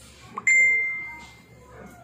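A single bell-like ding: a sharp strike about half a second in, one clear high tone that fades away over about a second.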